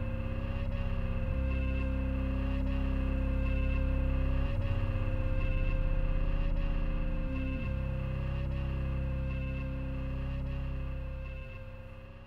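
Slow live band music: long, held electric bass notes changing every few seconds under a steady high drone, with faint regular ticks. It begins fading out near the end.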